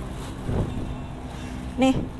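A vehicle engine hums steadily at idle, with a short rustle of plastic bags about half a second in as hands dig through them.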